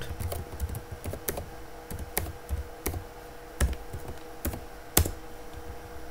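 Computer keyboard being typed on: irregular key clicks, with a heavier stroke about five seconds in, over a faint steady hum.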